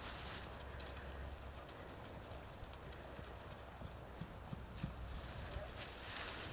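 Faint hoofbeats of a ridden horse walking on grass: soft, irregular thuds with a few light clicks, over a low steady rumble.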